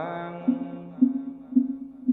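Wooden fish (mõ) struck at a steady beat of about two knocks a second, each a hollow knock with a short low ring, keeping time for Vietnamese Buddhist sutra chanting. The chanting voice dies away at the start, leaving the knocks alone.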